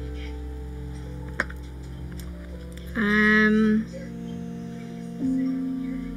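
Background music with sustained notes. A sharp click comes about a second and a half in, and a loud held note lasting almost a second comes about three seconds in.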